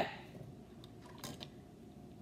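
A few faint, scattered clicks of plastic kitchenware being handled: a plastic measuring scoop and a milk jug.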